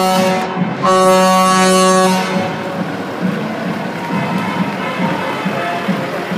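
A truck air horn blown twice, a short blast at the start and a longer steady one lasting over a second, then the low running of a heavy truck engine as it rolls by.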